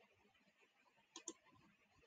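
Two faint computer mouse clicks in quick succession, a little over a second in, otherwise near silence.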